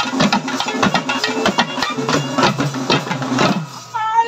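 Tamil folk drums beaten with sticks in a fast, dense rhythm accompanying a karagattam dance. The drumming thins and drops in level near the end.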